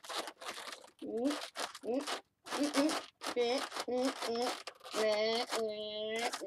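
Latex twisting balloons squeaking and rubbing against each other as they are stretched and twisted: a string of short squeaks, then a longer, steadier squeak near the end.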